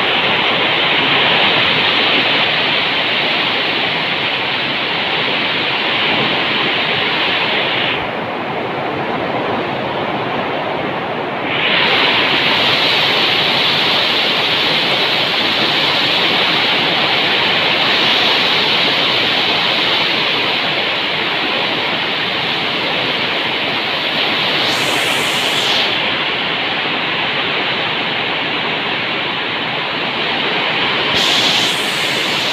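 Very heavy rain pouring down: a loud, steady hiss that thins for a few seconds about eight seconds in, then comes back as strong as before.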